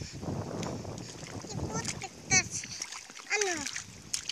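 Mud and shallow water sloshing and splashing as a toddler crawls through a flooded rice-paddy field, followed by a short, very high-pitched child's squeal a little after halfway and a brief vocal call with a rising-then-falling pitch near the end.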